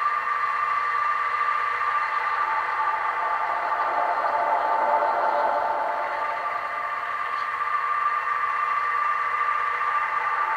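Homemade cassette tape loop playing on a portable cassette player: a steady drone of held tones, thin and without bass, swelling a little about halfway through.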